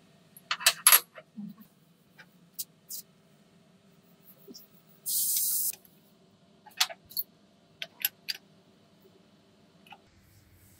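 Flat steel plates and jack parts clinking and knocking against each other and the steel workbench as they are handled and set in place, loudest about half a second in. A short hiss comes about five seconds in.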